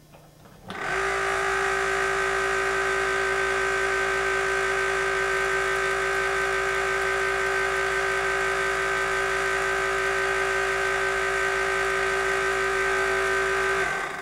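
Van de Graaff generator's electric motor and belt running with a steady hum and high whine, charging the dome. It switches on about a second in and cuts off near the end.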